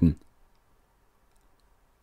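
A male narrator's voice trails off in the first moment, then near silence holds for the rest of the pause, broken only by a few faint, tiny clicks.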